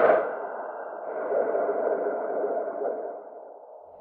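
Electronic dance music mix intro: the pulsing beat cuts off and a sustained, echoing synthesizer tone hangs on, slowly fading out near the end.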